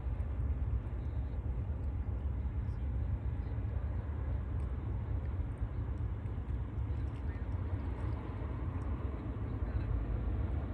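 A low, steady rumble with an even hiss above it, unbroken and without distinct events.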